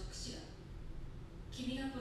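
Spoken dialogue from the anime episode's soundtrack, fairly quiet, with a brief pause in the middle before the next line begins.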